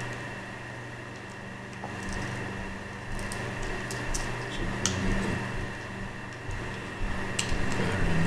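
A few scattered sharp clicks and taps of small plastic parts being handled as a battery is fitted into a pet collar tag, over a steady low electrical hum.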